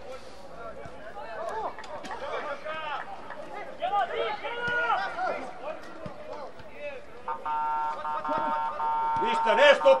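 Men's voices talking close by. About seven seconds in, a steady tone with several pitches at once starts abruptly and holds unchanged.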